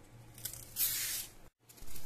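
Kitchen knife shaving the peel off a raw green banana: short hissing scrapes as the blade slides under the skin, the longest about a second in. The sound drops out completely for a moment about one and a half seconds in.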